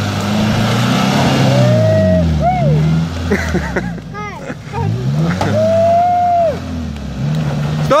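Jeep Cherokee XJ engine revving hard as it climbs a muddy, rutted slope, its pitch rising and falling several times as the driver works the throttle, with the tyres churning in the mud.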